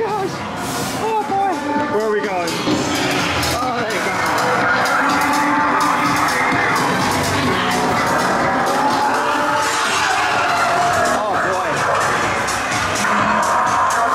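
Loud haunted-house soundtrack of music mixed with voices. Wavering vocal cries come in the first few seconds, then a dense, steady din.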